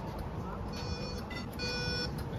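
Compass fare-card reader on a bus giving two short electronic beeps as a paper day-pass ticket is tapped on it, the sign of the fare being accepted, over the low rumble of the bus.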